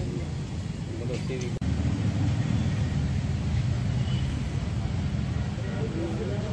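Steady low rumble of outdoor background noise, with faint voices in the background. The sound cuts out for a moment about one and a half seconds in.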